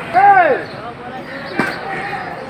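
A loud call from a voice, rising then falling in pitch, over the chatter of a crowd of onlookers at a demolition site. About a second and a half in comes a single sharp knock.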